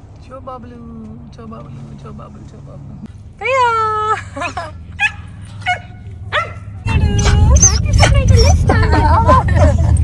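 A dog whining and yipping in excitement: one long whine that rises and falls a few seconds in, then a few short yips. From about seven seconds in, loud rumbling noise and overlapping voices cover it.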